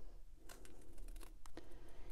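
Small scissors snipping short slits into white card stock, several quick snips from about halfway through.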